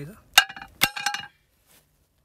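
Hammer blows on a steel drift driving a heated ring gear down onto a JCB 3DX flywheel: two sharp metallic clinks about half a second apart, the steel ringing briefly after each.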